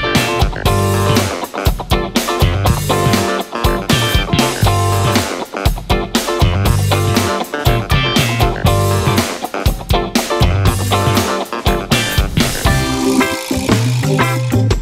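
Band instrumental on a G–Em–D–C–D chord progression, with Hammond organ, electric bass, guitar and drums; a heavy bass line repeats every couple of seconds under steady drum hits.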